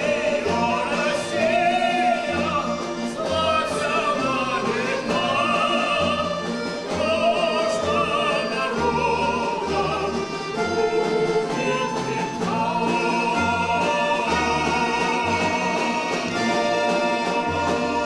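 Live performance of a song: male and female voices singing together with vibrato, accompanied by an ensemble of plucked folk string instruments and a double bass playing a repeating bass line.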